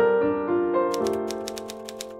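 Soft piano notes ringing and slowly fading, joined about a second in by a quick run of typewriter key clacks, several a second, from a typing sound effect.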